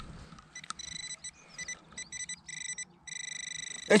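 Metal-detecting pinpointer probe giving short, irregular high-pitched beeps as it is worked through the soil in the hole. Near the end it goes to a continuous pulsing tone as its tip reaches a buried coin.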